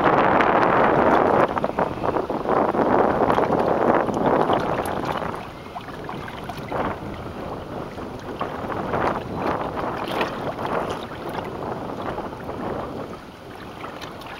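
Wind buffeting the microphone over choppy open water, with small waves lapping and splashing against a small anchored boat. It is loudest for the first few seconds, then settles lower.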